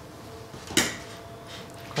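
Kitchen scissors picked up off a stainless-steel worktop: one sharp metallic clack about three quarters of a second in, and a lighter click near the end.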